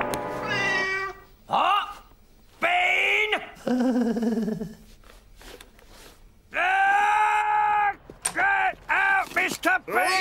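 A cartoon cat meowing and yowling in a string of drawn-out calls, one longer call and several short ones near the end, mixed with wordless cartoon voice sounds.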